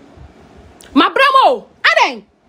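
Two short pitched vocal cries about a second in. The first rises and falls, and the second is brief and drops steeply in pitch.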